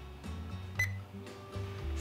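Handheld infrared thermometer giving one short, high beep with a click about a second in as it takes a reading. Soft background music plays underneath.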